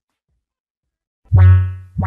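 Near silence between tracks, then about a second in a single deep, buzzy synth bass note hits loudly and fades, opening the next hip hop beat.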